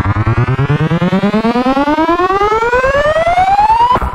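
Synthesized trap riser sound effect: a buzzy synth tone, pulsing rapidly, climbs steadily in pitch and cuts off abruptly at the very end.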